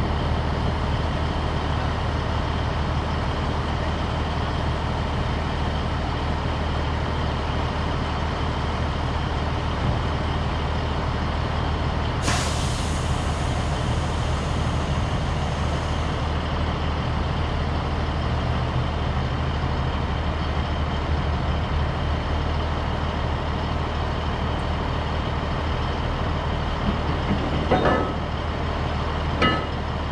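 Diesel semi truck idling steadily. About twelve seconds in, a hiss of released air starts suddenly and runs for about four seconds, and a few short knocks come near the end.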